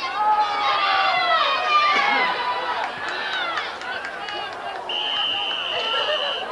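Spectators yelling and cheering during a football play, several voices at once. Near the end a referee's whistle blows one long steady blast, ending the play.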